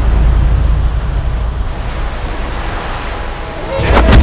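Dramatic sound-effect track of surging sea waves: a deep, loud rumble under a steady noisy wash of surf, ending in a sudden loud hit.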